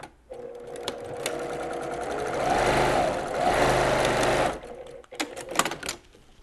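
Sewing machine stitching a short diagonal seam through the layered binding strips, running steadily and growing louder in its second half before stopping suddenly. A few sharp clicks follow near the end.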